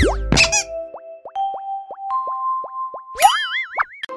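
Cartoon logo sting of short musical sound effects: a string of about six short notes, each dipping in pitch, over a held tone, then a rising slide-whistle-like glide that wavers up and down just before the end.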